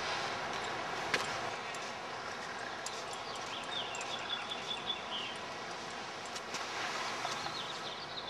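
Steady outdoor background noise with a few short, high chirps, likely birds, in clusters around the middle and near the end, and a sharp click about a second in.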